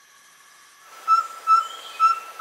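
Forest ambience with a steady soft hiss fading in. About a second in, a bird starts calling a short whistled note on one pitch, repeated about twice a second.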